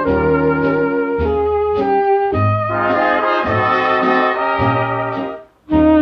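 Swing-era dance band playing an instrumental fox trot passage from a 1941 Bluebird 78 rpm shellac record, brass to the fore over a steady beat. The band breaks off for a split second about five and a half seconds in, then comes straight back in.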